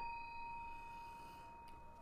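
A stemmed wine glass ringing after being struck, a clear bell-like tone that slowly dies away.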